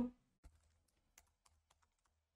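Faint typing on a computer keyboard: a quick run of light, irregular keystrokes.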